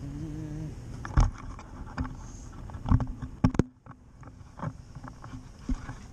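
Thumps and knocks of someone climbing into an SUV, with a louder knock as the door shuts about three and a half seconds in. After that the outside background goes quiet and a few clicks follow as the camera is handled inside the cabin.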